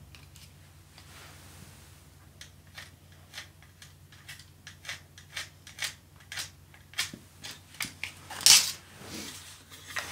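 Pencil and wooden bucksaw frame being handled while marking out: a run of short pencil strokes and taps on the wood, about two a second and growing louder. Near the end comes a louder clatter and scrape of wood as the frame's upright is pulled apart from its crosspiece.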